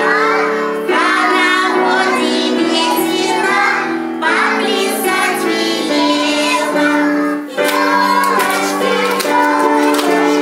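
Music: a children's song sung by a child's voice over instrumental accompaniment, with a brief break about three quarters of the way through.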